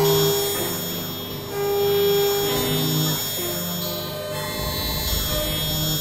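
Experimental synthesizer music: layered sustained electronic tones, with notes changing every half second to a second over steady high drones. A low rumble comes in about four and a half seconds in.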